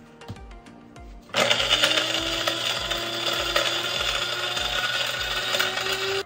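Electric blade coffee grinder running, grinding hard dried ginger pieces into powder. The motor starts about a second in and runs steadily, a dense whirring with a low hum and a whine that rises slightly.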